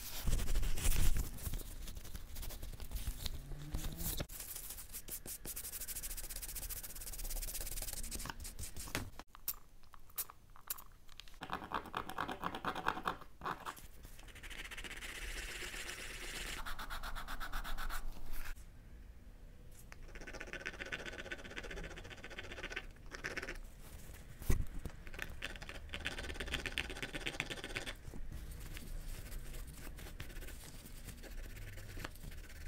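Gloved hands rubbing and dabbing a cloth pad, scratching and scraping against leather and a metal tin, with stretches of fast, even rubbing strokes. A knock about a second in and a sharp click later on.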